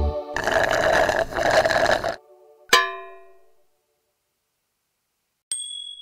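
Cartoon sound effects in a gap between songs. A rough, noisy sound of about two seconds comes first, then a single bright ding that rings away, a pause, and a thin, high, steady tone near the end.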